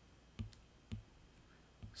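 Three faint clicks, the third after a longer gap, from handwriting a number onto the computer screen.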